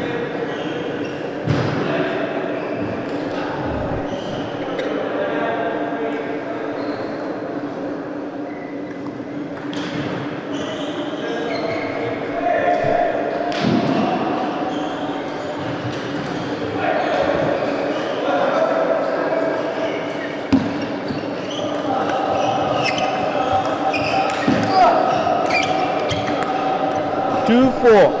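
Voices echoing in a large hall, with occasional short clicks of a table tennis ball striking bats and the table during a doubles rally.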